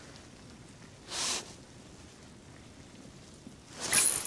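Quiet ice-shelter room tone with a faint steady hiss and one brief soft rush of noise about a second in. Near the end comes a sudden sharp rustle and clatter as the ice rod is jerked up to set the hook on a striking walleye.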